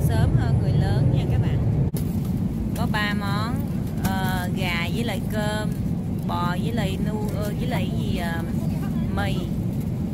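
Steady low rumble of a jet airliner's cabin in flight, with people's voices talking over it.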